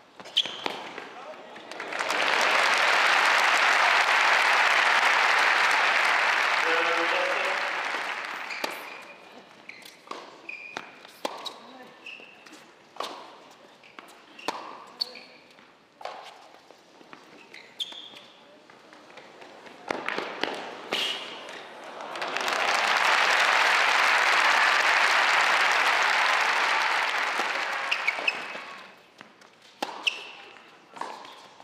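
Indoor crowd applauding for several seconds after a point, then a tennis rally: sharp racket strikes on the ball, ball bounces and brief shoe squeaks on the hard court, then a second long round of applause near the end.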